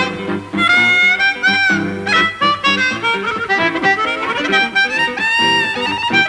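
Live blues: a harmonica plays long held and bent notes over guitar accompaniment in an instrumental passage.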